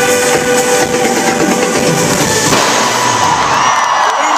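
Loud live pop concert music played over an arena sound system. About two and a half seconds in, the full band sound drops away and the crowd's cheering and high screams come through.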